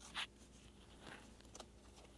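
Faint rustling and sliding of trading cards being handled and slipped into plastic card sleeves, with a brief soft scrape just after the start.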